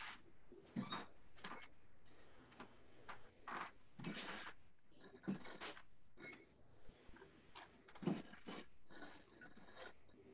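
Faint, irregular knocks and rustles of a person moving about in a small room, a few short noises every second or so.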